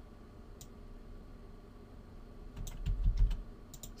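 Clicks of a computer keyboard and mouse being worked: a single click about half a second in, then a quick run of several clicks near the end.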